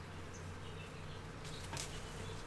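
A steady low buzzing hum, with a short rustling crackle of hop bines and leaves near the end as hops are pulled from the vine by hand.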